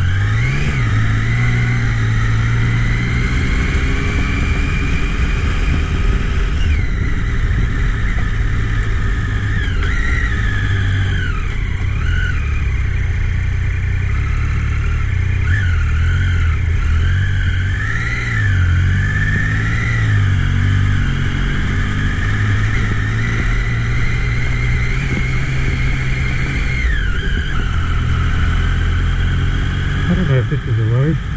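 Triumph adventure motorcycle's engine being ridden at low speed, its pitch rising and falling again and again as the throttle is opened and closed, over a constant rush of wind and road noise.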